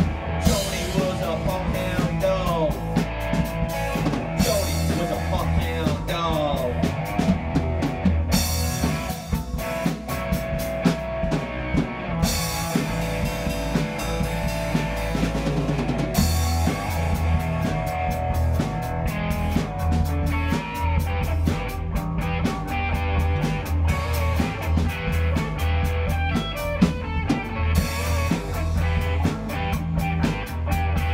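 Instrumental break of a swamp-rock band: a guitar lead with bent notes over a steady beat on the drum kit and a bass line.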